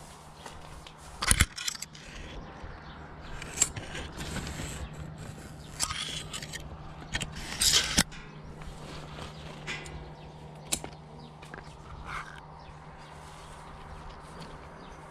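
Grapevine shoots and leaves being handled overhead: rustling with a string of sharp snaps and clicks, the loudest about a second in, as shoots and clusters are worked. A steady low hum runs underneath.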